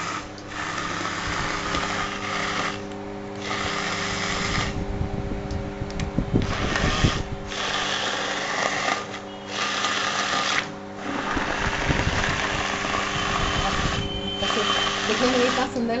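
Electric hand blender running in a glass bowl of spinach soup, puréeing it, its motor stopping for a moment about six times and starting again.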